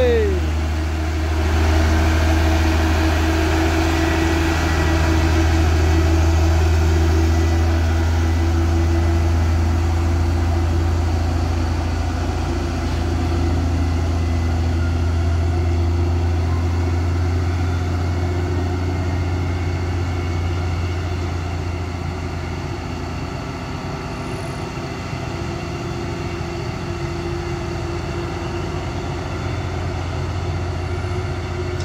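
Diesel engine of a laden Mitsubishi Fuso truck pulling steadily up a steep grade: a deep, steady drone that fades slightly in the second half as the truck moves away.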